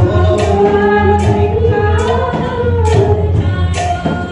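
Devotional kirtan: a bhajan sung over a sustained low drone, with a sharp beat-keeping strike a little more than once a second.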